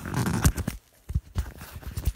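Handling noise on the microphone: a rustling burst, then several sharp knocks as it is fitted.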